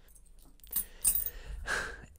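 A few short, soft noises as silver coins are laid down on a cloth, loudest about a second in, followed by a breath near the end.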